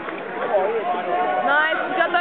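Indistinct voices of spectators and coaches in a sports hall, with one voice calling out louder near the end.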